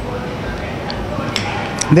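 Steady café room noise, with a couple of faint clinks of a metal spoon against a glass dessert cup in the second half.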